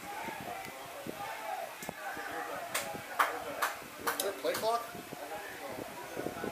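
Indistinct voices of people on a football sideline talking and calling out, not forming clear words. A handful of sharp clicks stand out in the middle, between about three and five seconds in.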